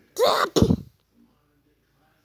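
A person's short, loud vocal burst in two quick parts, harsh and breathy, lasting under a second.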